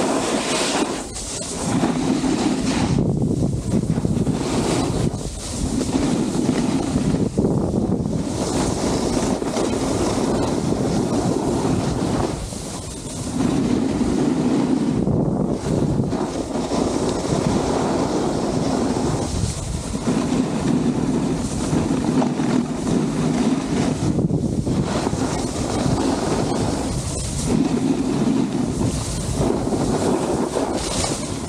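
Snowboard sliding over groomed snow, a continuous rushing scrape that rises and falls every few seconds, mixed with wind buffeting the camera microphone.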